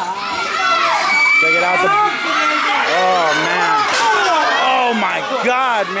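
Live crowd, many of them children, shouting and cheering, with many high voices yelling over one another.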